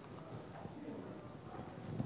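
Quiet pause in a presentation room: low room noise with faint, indistinct voices.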